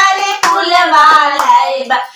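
Women singing a Magahi Shiv guru bhajan to their own hand clapping, the claps cutting sharply through the sung line.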